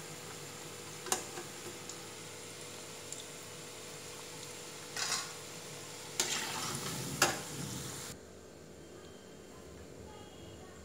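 Oil sizzling steadily as battered cauliflower pieces deep-fry in a steel kadai, with a few sharp clinks of a metal slotted spoon against the pan. The sizzle cuts off suddenly a little after eight seconds, leaving a quieter room.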